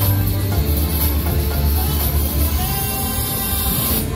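Loud fairground music from a thrill ride's sound system, with a steady heavy bass.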